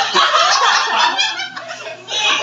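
A group of adults laughing together, several voices overlapping.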